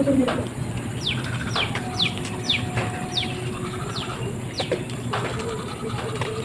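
A bird calling: a series of about seven short, high notes, each sliding quickly downward, roughly one every half second.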